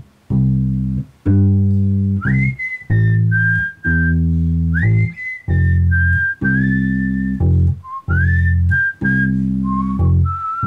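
Electric bass guitar playing long held notes, about one a second with short gaps, under a whistled melody. The whistling enters about two seconds in, each phrase sliding up into its first note.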